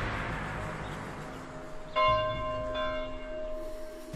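The tail of a heavy boom fading away, then a bell struck about halfway through, ringing on with a lingering tone, and a second, lighter strike shortly after.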